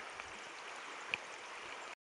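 Faint, steady rush of a shallow creek's running water, with a single small click about a second in; the sound cuts off abruptly just before the end.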